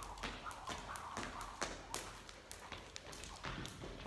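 Skipping rope turning and slapping a hard hall floor, with trainers landing lightly on side-to-side jumps: a steady run of sharp taps, two or three a second.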